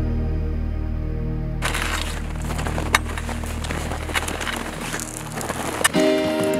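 Footsteps crunching in snow under crampon-fitted boots, with trekking-pole tips striking, starting about one and a half seconds in over soft background music; a sharp click stands out near the middle and another near the end.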